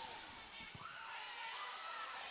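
Quiet volleyball-gym ambience with faint crowd noise and a couple of soft thuds of a volleyball bounced on the hardwood court before a serve.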